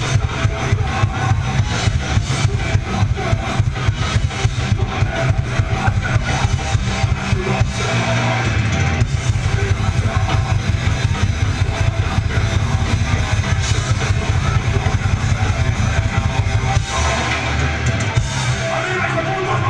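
A rock band playing loud and live: a drum kit hit in a fast, driving rhythm under guitars, heard from among the audience in a club.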